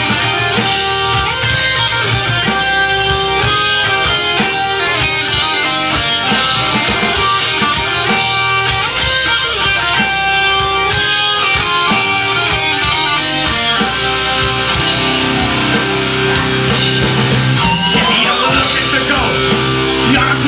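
Live pirate-metal band playing an instrumental passage: electric guitars and drums, with a fast melody line running over a steady beat.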